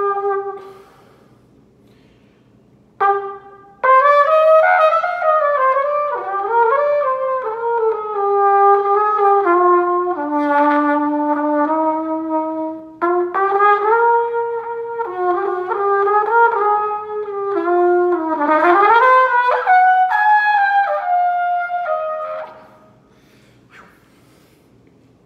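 Pocket trumpet played solo: a held note that stops about a second in, a short pause and a brief note, then a long unbroken melodic phrase of many notes with a sliding scoop in pitch near the end, stopping shortly before the end.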